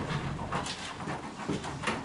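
Sheets of paper being handled and shuffled, with irregular rustles and a couple of sharper crinkles, one about halfway and one near the end.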